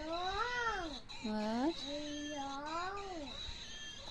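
A high-pitched human voice making wordless, drawn-out sing-song sounds: three long tones, each sliding up and down in pitch.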